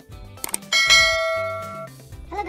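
Subscribe-button sound effect: two quick mouse clicks, then a bright bell ding that rings out and fades over about a second.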